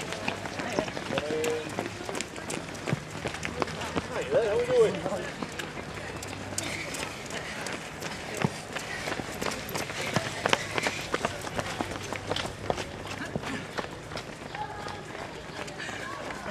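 Footsteps of a group of runners passing close by on a paved path: many quick, irregular footfalls throughout, with brief snatches of voices.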